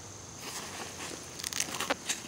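Rustling of the nylon fabric of an ILBE backpack and its pouch as it is handled, with a few small clicks in the second half.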